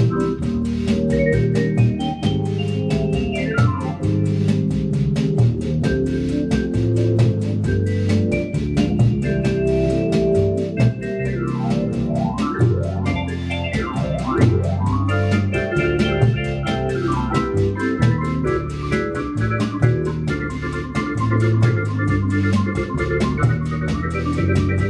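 Hammond organ played through Leslie speakers in a bossa-nova arrangement: sustained chords over a rhythmic pedal bass line, with quick glissando sweeps up and down the keys a few times, over a steady fast ticking rhythm.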